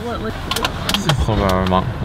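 A few sharp clicks and knocks, then a person's voice holding a drawn-out vowel for about half a second.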